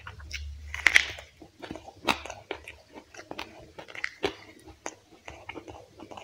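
A person biting into and chewing fried quail close to the microphone: irregular crisp crunches and chews, the loudest crunch about a second in.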